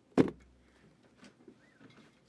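A single sharp knock of handling about a quarter second in, then a few faint clicks and a brief faint squeak.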